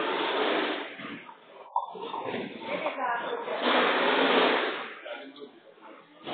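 Nine-pin bowling hall: balls rolling down the lanes and pins clattering, with people talking. There is a sharp knock a little under two seconds in and a loud, noisy spell around four seconds in.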